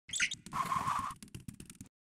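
Logo-intro sound effect: a short high bird-like chirp, then a whoosh carrying a steady hum for about half a second, then a run of quick ticks that fade away.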